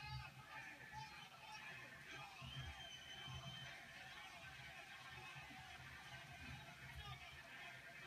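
Faint, muffled arena background noise from a kickboxing broadcast playing through a TV speaker, with some low thuds and a brief whistle-like tone a few seconds in.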